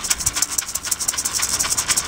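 A hand rattle shaken in a fast, even rhythm, about six or seven crisp strokes a second.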